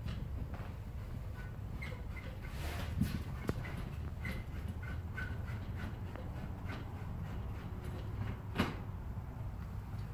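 A survey prism being screwed onto a prism pole by hand: a few light clicks and knocks with faint short squeaks, over a steady low room hum.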